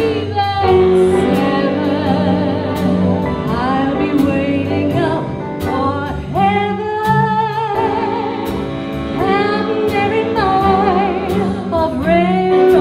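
Live big band playing a 1940s wartime song, with three female vocalists singing together and holding notes with vibrato over a steady beat of drum and cymbal hits and walking bass.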